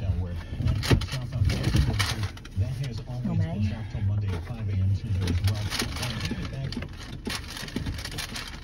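A man's low voice sounding without clear words, with a few sharp clicks and knocks scattered through it.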